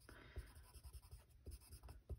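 Faint scratching of a watercolor pencil's lead on cardstock, in short uneven strokes as the edges of the stamped image are shaded.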